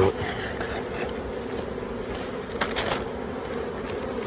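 Honey bees buzzing around an open hive in a steady hum, with a brief crackle of plastic sheeting being cut with scissors near three seconds in.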